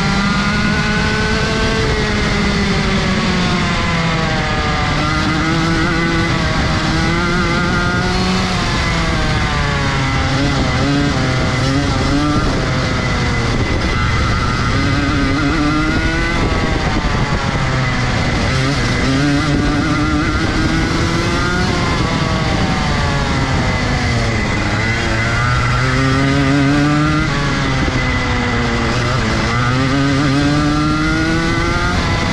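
Rotax 125 Junior Max kart's single-cylinder two-stroke engine, heard close from onboard, pulling hard through a lap. The revs climb on the straights and drop back for the corners, over and over.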